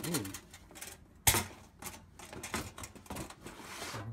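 Metal tin lunch box being opened: one sharp clack about a second in, the loudest sound, then a string of lighter clicks and rustles as the tin and a cardboard-boxed figure inside are handled.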